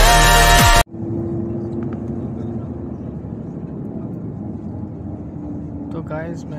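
A pop song with vocals cuts off suddenly about a second in, giving way to the steady engine and road rumble heard inside a moving vehicle, with a faint steady hum.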